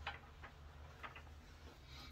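Near silence: room tone with a low hum and a few faint, irregular clicks.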